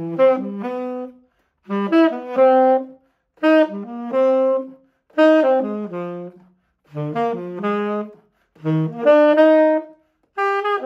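Unaccompanied tenor saxophone playing jazz arpeggio exercises, chord tones of each chord in a changed order. It plays six short phrases of several notes each, with brief silent pauses between them.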